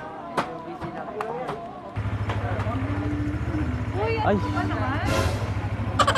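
Motorcycle engine starting about two seconds in and then idling with a steady, even low pulse. A voice exclaims over it near the end.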